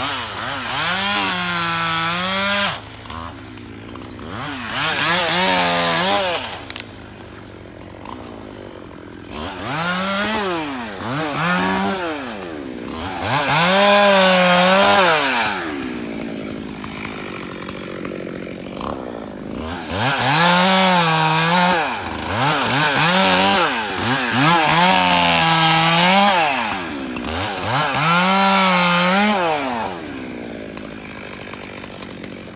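Two-stroke chainsaw cutting through brushy deadfall, revving up into each cut and dropping back to idle between cuts, again and again.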